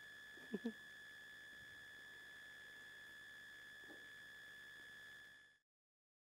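Faint, steady high-pitched electronic whine over low background hiss, with a brief word and laugh about half a second in. The sound cuts off abruptly near the end into total silence.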